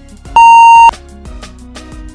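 Workout interval-timer beep: a single long, higher-pitched beep about a third of a second in, lasting about half a second, marking the end of the countdown and the start of the next interval, over background music.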